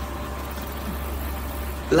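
Steady low hum with faint even room noise.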